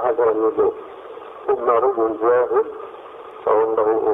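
Speech only: a man talking in short phrases with pauses between them. The voice sounds thin and muffled, like an old tape or telephone recording.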